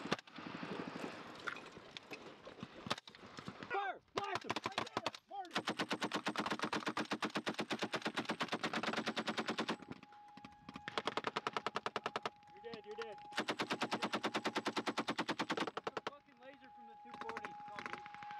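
Belt-fed machine gun firing rapid bursts: a long burst of about four seconds starting around five seconds in, then two shorter bursts. Shouted voices come early on, and a steady thin tone sounds under the later bursts.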